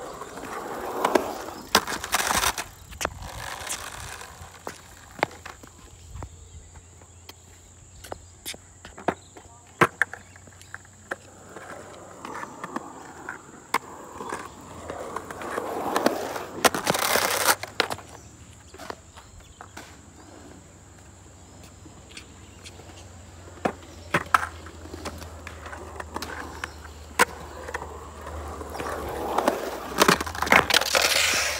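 Skateboard wheels rolling over a concrete skatepark surface, swelling as the board passes close and fading away, loudest about two-thirds of the way through and again near the end. Sharp clacks of the board's tail and wheels striking the concrete punctuate the rolling throughout.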